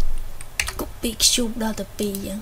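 Computer keyboard keys clacking in short clusters, mixed with brief voiced sounds from the presenter.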